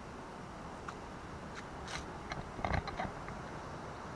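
A few clicks and knocks from a handheld camera being turned around in the hand, bunched together about two to three seconds in, over a steady outdoor background hiss.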